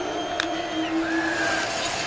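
Stadium crowd noise with a steady held tone over it that stops shortly before the end, and a single sharp click about half a second in.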